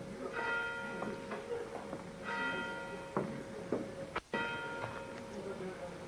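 A bell tolling, struck three times about two seconds apart, each stroke ringing out and fading. A few short knocks in between, likely footsteps on the stage boards.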